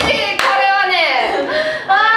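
Group of young women laughing loudly, with a single hand clap about half a second in.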